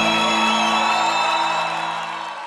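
A live rock band's final chord rings out as the song ends, the bass cutting off at the start and the sustained tones fading away.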